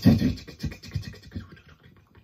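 Vocal percussion into a headset microphone: a quick run of short, scratchy, beatbox-style strokes, loudest at the start and tapering off.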